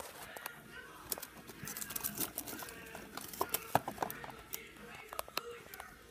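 Scattered light clicks, taps and rustles of a small plastic toy figure and cardboard being handled, with a faint voice in the background.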